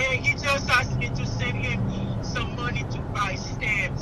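A voice on a phone call coming through a smartphone's loudspeaker, thin and tinny, speaking in short phrases. Under it runs a steady low hum of the car.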